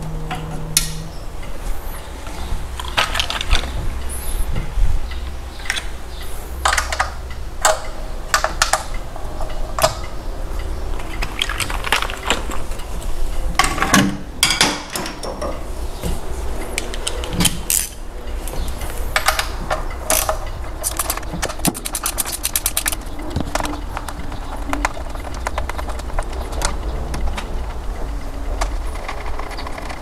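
Scattered metal clinks and knocks of hand tools and fasteners as the rocker cover is taken off an MGB's four-cylinder engine, with a quick run of fine clicks about two-thirds of the way in. A steady low hum runs underneath.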